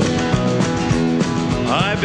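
Live country band playing: guitar strumming over bass and drums in a steady rhythm, with a man's singing voice coming in near the end.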